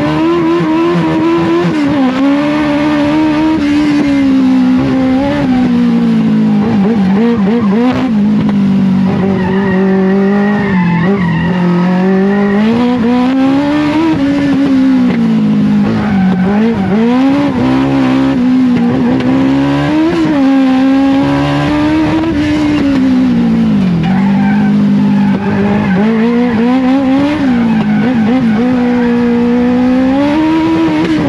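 Motorcycle engine of a lightweight Legend race car, heard from inside its cockpit, revving up and falling back again and again as it is driven hard around a tight course. It is not running right on this lap: the driver suspects it is running rich or lean, which he puts down to carburettor jets clogged by ethanol-fouled fuel.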